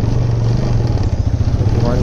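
TVS Apache single-cylinder motorcycle engine running with a steady low drone while the bike is ridden, with a rushing noise of the ride over it.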